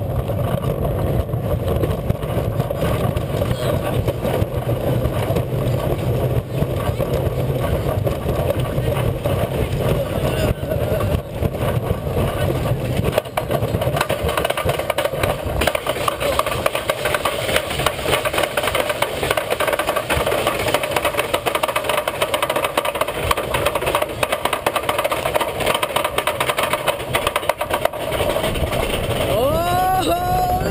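Wooden roller coaster train rumbling along its wooden track and then climbing the lift hill, the lift chain clattering steadily under the cars. A few brief high squeals come near the end as the train nears the crest.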